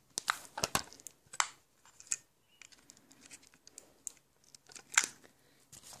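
Handling noise: scattered soft clicks, scrapes and rustles of fingers fumbling with a small plastic action camera and a micro SD card as the card is pushed into its slot, with sharper clicks about a second and a half in and about five seconds in.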